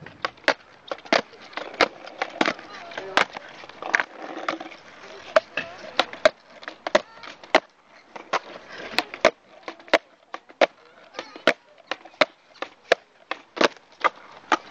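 A skateboard being ollied over and over on asphalt: sharp cracks of the tail popping and the board landing, repeating quickly about every two-thirds of a second.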